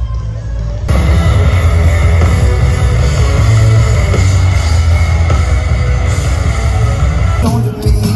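Loud live rock music from a festival stage's sound system, heard from among the crowd, with heavy bass. It starts abruptly about a second in, and the sound shifts near the end.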